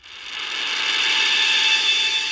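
A synthesizer note played on a Continuum fingerboard with a soft, stroked attack, swelling in over about the first second and then holding as a bright, buzzy sustained tone.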